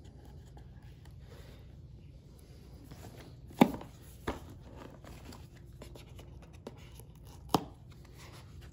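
Hands handling and unboxing a cardboard product box, sliding its sleeve off. A few sharp knocks and taps of cardboard are heard, the loudest about three and a half seconds in, another just after it and one near the end, with faint scraping of cardboard between them.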